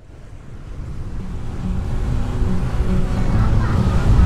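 Passenger train running, heard from inside a coach by an open window: a steady low rumble with rushing wind that fades in and grows louder.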